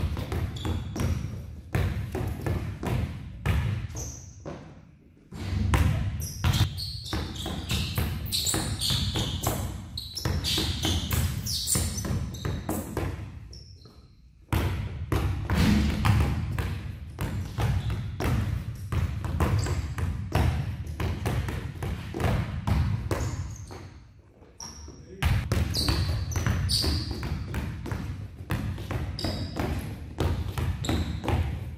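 Basketballs dribbled hard on a gym floor, a fast steady run of bounces that breaks off briefly three times as each pass through the cone drill ends.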